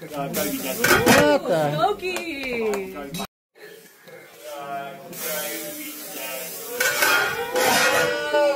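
Voices talking, cut off for a moment by a brief dropout to silence a little over three seconds in.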